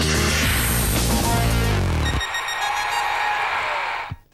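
Electronic TV sports-news theme music with a heavy bass and a falling sweep; about two seconds in the bass drops out, leaving high sustained shimmering tones.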